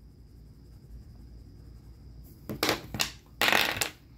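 Two dice rolled across a hard tabletop: quiet at first, then a few short clicks and a longer clatter in the second half.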